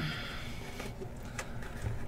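Soft handling noise from velvet drawstring card pouches being lifted and moved in a cardboard box: a brief rustle at the start, then a few light taps.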